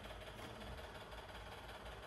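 Faint, steady background noise with a low hum and no distinct events: room tone.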